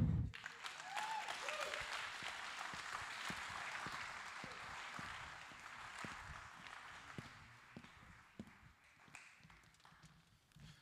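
Audience applauding in an auditorium, starting at once and dying away over about eight seconds, with a few last scattered claps near the end.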